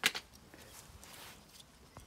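A sharp knock right at the start, then faint light tapping and scratching: Shiba Inu puppies moving about on a plastic slatted floor.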